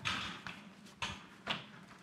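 Frame and pivot mechanism of a ProForm Hybrid Trainer XT elliptical being folded into its recumbent-bike position by hand: a short rustling rush that fades, then two sharp clicks about half a second apart.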